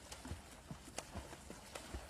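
Water splashing as a swimmer's arms strike the surface, a quick, uneven run of slaps and splashes about four times a second.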